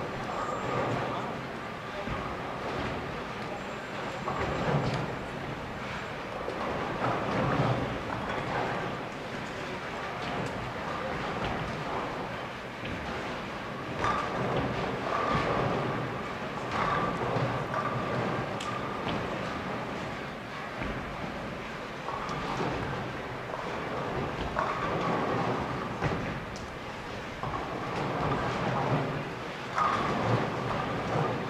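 Bowling-alley ambience: bowling balls rolling down the wooden lanes with a low rumble and pins being knocked down in sharp clattering crashes now and then, over constant background chatter of bowlers and spectators in a large hall.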